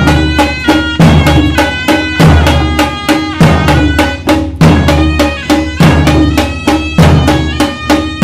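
Dhol barrel drums beating a fast traditional festival rhythm, about four or five strokes a second, with a pitched melody line running over the beats.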